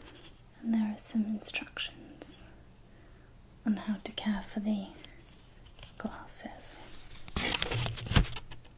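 Soft whispering in a few short phrases, with light paper handling clicks from a small printed leaflet being turned over. A louder rustle comes near the end.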